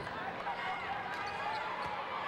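Live sound of a basketball game on a hardwood court in a large arena: the ball bouncing with a few sharp knocks, short high sneaker squeaks and scattered voices.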